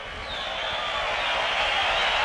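Large stadium crowd cheering and applauding a band member's introduction, swelling from about half a second in.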